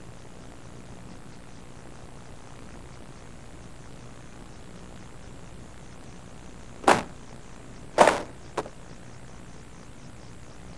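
Three short, sharp rustles of paper sheets being handled, the second the loudest, over steady tape hiss.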